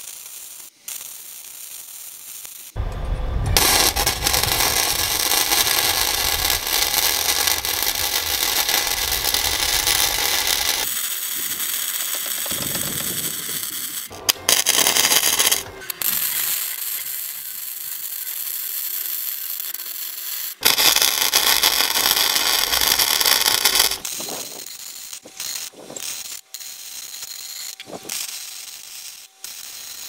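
Arc welding on a steel trailer frame: a steady crackling sizzle in several runs of a few seconds each, the longest about eight seconds, broken by short pauses between beads.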